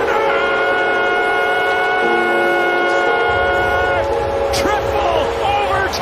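Arena goal horn sounding one long steady blast that cuts off about four seconds in, followed by a man's voice.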